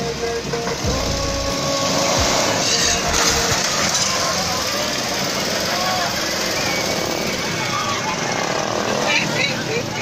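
Busy outdoor street ambience at a crowded fair: indistinct crowd voices over a continuous rumble, with a deeper rumble about a second in.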